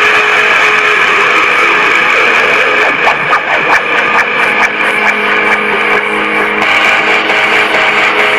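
Loud noise-rock music, mostly dense, distorted electric guitar holding steady droning pitches. A run of fast, sharp strokes comes in the middle.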